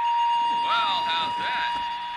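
A steady high-pitched electronic tone, with short pitched chirps gliding up and down over it for about a second.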